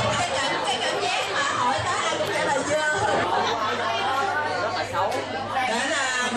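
Many people talking at once in a crowded hall: a steady din of overlapping chatter.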